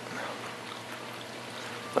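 Water running and trickling steadily through a reef aquarium sump, over a faint steady low hum.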